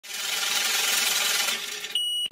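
Shimmering, sparkly sound effect of a logo intro, a dense tinkling hiss like scattered glass or coins. It swells in over the first half second, holds, dips slightly near the end, and finishes on a short high ping.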